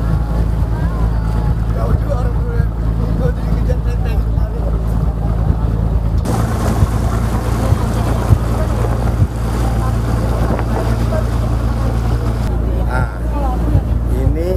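A boat's engine runs with a steady low drone under the rushing hiss of water churned up in its wake. From about six seconds in, the rushing water becomes louder and fuller.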